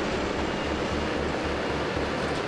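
Krone BiG X self-propelled forage harvester at work chopping standing maize: a steady mix of engine and cutting-machinery noise with a regular low throb.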